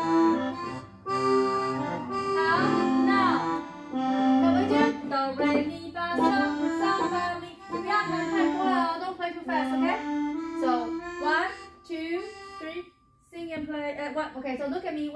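Several digital pianos played at once by students, all set to the same selected voice (number 032), with sustained reedy notes overlapping out of step. The playing breaks off briefly near the end.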